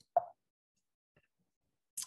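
A single brief soft pop from the speaker's mouth, a lip smack between sentences, about a fifth of a second in; otherwise the call audio is cut to silence.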